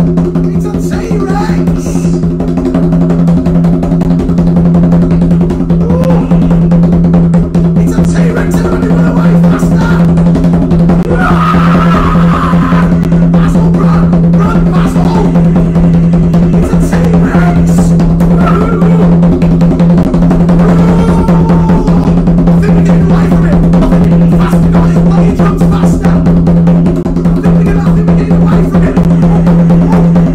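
Rapid, continuous hand drumming on a tall skin-headed hand drum, played with both palms as a fast roll that stands for running feet, over a steady low tone.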